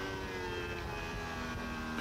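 Racing motorcycle engine heard through the onboard camera, running at high revs as a steady pitched note that drops slightly at the start and then holds.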